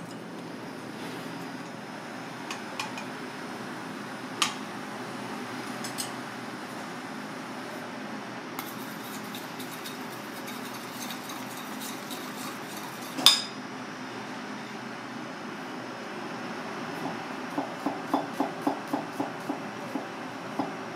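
A metal spoon stirring and scraping sauce in a stainless steel bowl, clinking lightly and then striking the bowl once with a loud ringing clink. Near the end, a chef's knife slicing garlic cloves on a plastic cutting board gives a quick run of knocks, about four a second.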